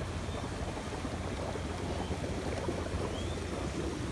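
Steady low outdoor background rumble with no distinct events. There is one faint, short rising chirp about three seconds in.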